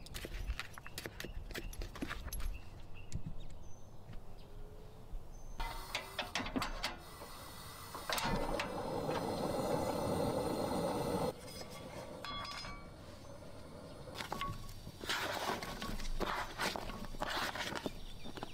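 Knife chopping vegetables on a plastic plate, a run of sharp taps. Then a portable gas camp stove is lit: a click and about three seconds of steady hissing. Near the end comes clattering as vegetables are tipped into a cast iron skillet.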